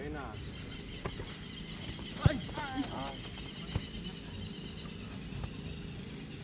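Sharp thuds of a football being struck during a goalkeeper drill: one loud thud about two seconds in and a softer one near four seconds, with a brief high call right after the loud one.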